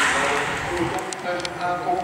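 The rush of two racing bicycles passing close, fading away in the first half-second, then a few light clicks and voices talking at the roadside.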